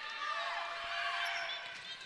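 Volleyball rally in an indoor arena: faint sneaker squeaks on the court floor and ball contacts, over crowd and player voices.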